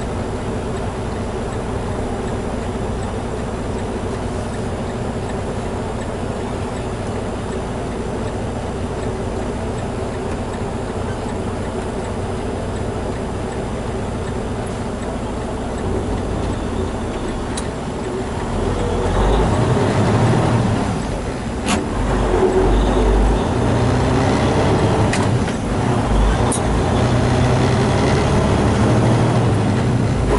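Semi-truck diesel engine heard from inside the cab, first idling steadily, then pulling away and accelerating, growing louder from about halfway through. There are a brief drop in the engine note and a few sharp clicks in the later part.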